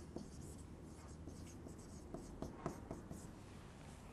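Faint scratchy squeaking of a dry-erase marker writing a word on a whiteboard, in short strokes.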